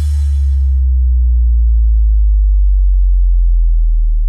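The closing sub-bass note of an electronic DJ slow remix, held long and slowly sinking in pitch as it begins to fade, with the ring of a cymbal dying away in the first second.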